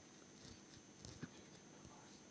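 Near silence: room tone with a faint steady high hum and a few very faint small ticks.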